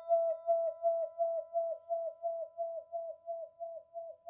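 A chime-like logo sound effect: one struck, bell-like tone that keeps ringing and slowly fades. It wavers in pitch and loudness about four times a second.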